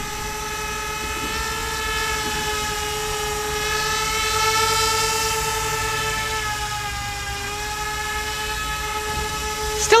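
RC Z-2 bicopter flying close by: its two electric motors and propellers give a steady pitched whine with several overtones. It gets a little louder and higher around the middle, then eases off.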